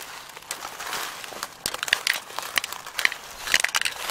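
Footsteps crunching through dry fallen leaves and sticks, with irregular crackles and snaps of twigs.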